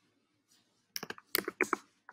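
Computer keyboard typing: a quick run of several sharp keystrokes, starting about a second in.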